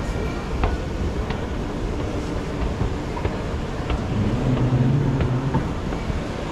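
Escalator running with a steady low mechanical rumble under the hubbub of a busy terminal hall, with a few faint clicks. A louder low hum comes in about four seconds in and stops shortly before the end.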